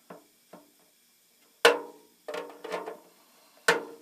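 Hammer tapping a punch to drive the remains of a drilled-out Avex blind rivet out of a thin aluminium panel. Two light clicks, then about four sharp taps from about a second and a half in, each with a short metallic ring, the first the loudest.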